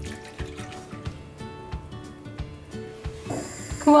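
Background music, over the faint sound of milk being poured into a pan and a wooden spoon stirring a thick eggplant and flour mixture.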